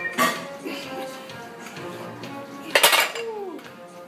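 Metal clanks of a loaded EZ-curl barbell and its iron weight plates being handled and set down: a sharp clank just after the start and a louder, ringing one near three seconds in, with gym music underneath.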